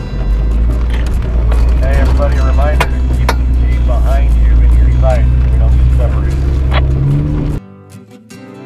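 A Jeep driving up an off-road slickrock trail, with a loud steady low rumble from the vehicle. Short muffled voices come in the middle. The rumble cuts off suddenly near the end and acoustic guitar music takes over.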